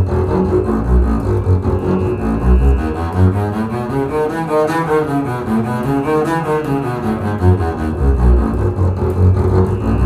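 Double bass played with a bow, running the E major two-octave scale at a fast tempo. The notes climb quickly to the top near the middle and come straight back down, with low notes at the start and end.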